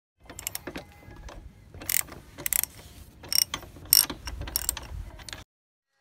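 Steel combination wrench working a bolt on a motorcycle: a run of irregular metallic clicks and clinks with several sharper clanks, stopping abruptly about five and a half seconds in.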